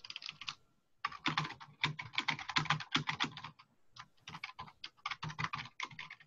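Typing on a computer keyboard: a fast run of keystrokes after a brief pause about a second in, thinning to sparser taps near the end.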